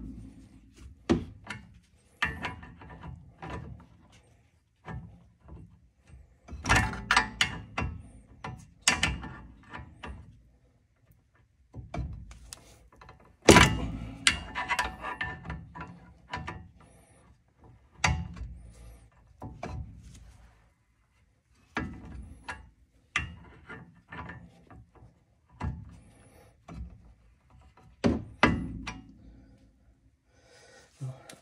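Wrench and socket working a steel caliper mounting bolt loose on a 1977 Corvette's front brake: an irregular string of metallic clicks and knocks with short pauses, the loudest a little under halfway through.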